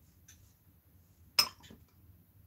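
A sharp clink about one and a half seconds in, then a softer one just after, as hard painting supplies are handled and set down on a worktable.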